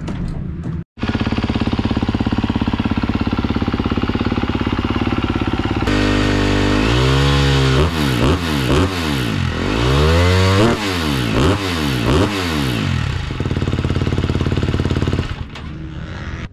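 A 250 motocross bike's engine idling on its stand, then revved several times in quick rising and falling blips before settling back to idle; it cuts off shortly before the end.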